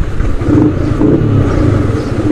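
Yamaha MT-15's 155 cc single-cylinder engine running steadily at low revs as the bike moves off.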